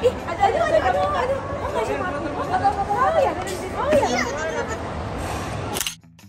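Several people chattering at once, voices rising and falling, over a background of crowd babble; the sound cuts off abruptly at the very end.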